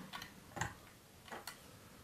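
A few faint, sharp clicks of small plastic building-toy parts being handled as a Lepin minifigure's skirt piece is pulled off.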